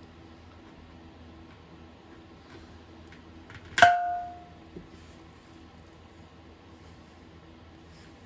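One sharp pop with a short metallic ring about four seconds in: a paintless-dent-repair glue tab letting go of the steel fuel tank of a 1982 Honda ATC 185S under a pull, with the dent not coming out. Otherwise a low steady room hum.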